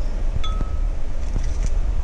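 Eggs being opened into a ceramic mixing bowl. A light tap against the bowl makes it ring briefly about half a second in, and a few faint clicks sound over a steady low rumble.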